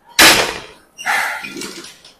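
Heavy, strained breaths from a man pushing a leg extension set to failure: two loud gasping exhalations about a second apart.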